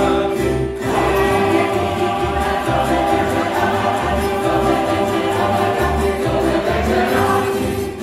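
Tamburitza orchestra playing live: plucked tamburica strings over a pulsing upright bass, with a group of voices singing.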